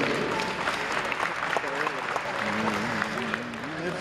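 Audience applauding, a dense patter of many hands clapping, with some voices heard through it.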